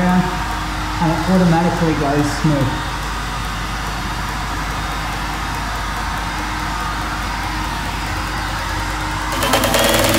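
Electric heat gun running with a steady blowing rush as it heats vinyl wrap. A voice sounds over it in the first few seconds, and electronic music cuts in near the end.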